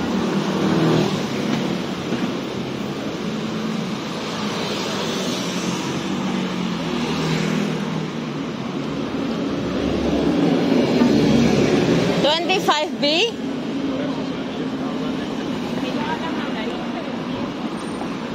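Busy street traffic noise, cars driving by close at hand, with voices nearby. About two-thirds of the way through comes a short burst of rising high-pitched squeaks.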